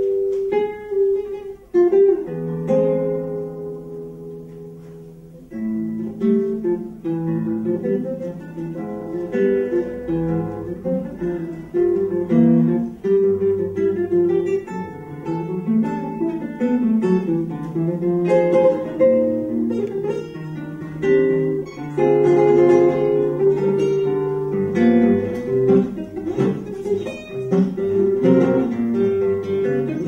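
Solo classical guitar playing: a chord struck about two seconds in rings and fades for a few seconds, then runs of plucked notes and chords carry on.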